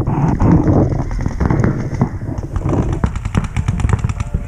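Paintball markers firing in rapid strings, many sharp shots a second.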